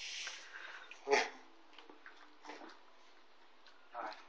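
Newspaper rustling at the start, then a stainless-steel dog bowl knocking down sharply about a second in, with a smaller knock later. A puppy steps out over the newspaper lining of a wire crate.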